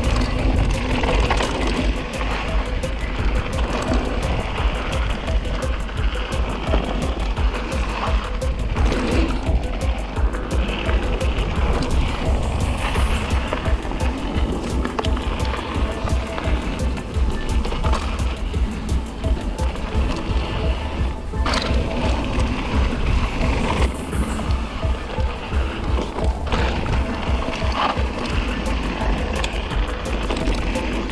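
A mountain bike rolling fast down a rough dirt trail: steady tyre roar and low rumble with frequent small knocks and rattles from the bike, and wind buffeting the microphone. Music plays along with it.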